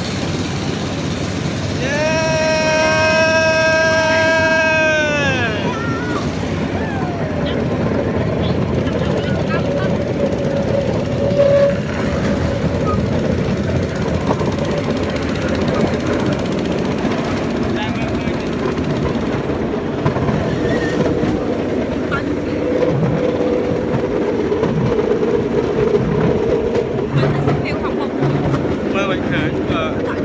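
A passenger vehicle running steadily, with people chattering around it. Early on a loud, steady pitched tone sounds for about three seconds and sags in pitch as it stops.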